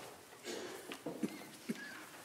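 A few soft footsteps and light knocks, three separate taps in the second half, over quiet room tone.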